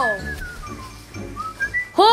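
A man whistling: a single thin note that slides downward, then climbs back up near the end.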